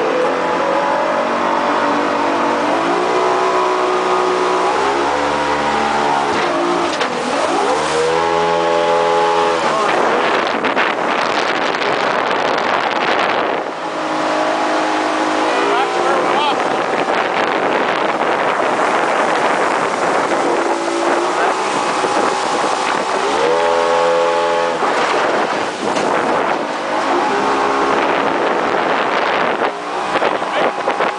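Riverboat engine running under way, its pitch rising and falling several times as the throttle is worked, over a steady rush of water and wind.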